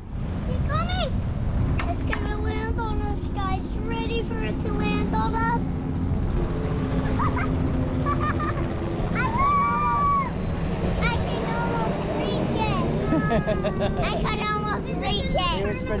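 Helicopter flying overhead, a steady low engine and rotor drone with a faint hum that shifts slightly in pitch as it passes, under young children's excited high voices.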